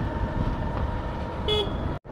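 Hero Honda Super Splendor single-cylinder motorcycle riding along, a steady low rumble of engine and wind, with one short horn toot about one and a half seconds in.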